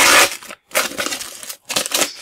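A plastic sticker-packet wrapper crinkling as a stack of stickers is pulled out of the torn-open pack. The crinkling is loudest at the start and comes again in two shorter bursts after a brief pause.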